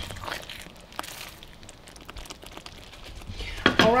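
Thick tomato gravy simmering in a skillet while a silicone spatula stirs it: faint, irregular soft crackles and scraping, with one sharper click about a second in. The gravy is thickening as it cooks down.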